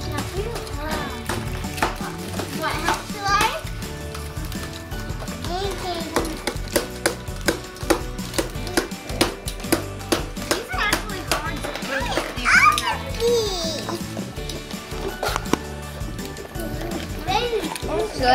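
Children chattering and calling out over background music, with frequent small clicks and rustles from unwrapping foil-wrapped chocolate eggs and handling plastic toy capsules.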